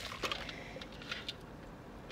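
Faint clicks and rustles of a plastic container and drug pipe apparatus being handled and opened with gloved hands.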